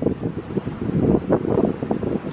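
Wind buffeting the camera's microphone: an irregular, gusty low rumble.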